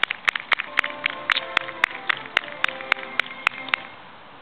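One person clapping close by, steadily at about four claps a second, over background music playing from a loudspeaker.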